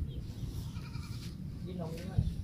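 A goat bleating: a wavering call about half a second in, then a shorter call near the end.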